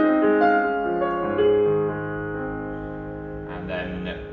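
Yamaha P125 digital piano playing a slow passage on its mellow grand-piano voice: a few held notes and chords, the last chord left to fade from about halfway through.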